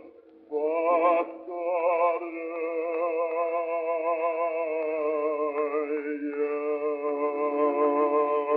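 Bass voice singing a Russian romance with wide vibrato, on a 1909 acoustic recording whose sound is thin and narrow. After a brief break at the start comes a short phrase, then a long held note from about two seconds in.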